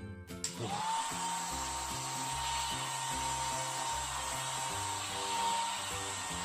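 Handheld hair dryer switched on about half a second in, drying wet watercolor paint: its motor whine rises quickly to a steady pitch over a steady rush of air. Background music plays underneath.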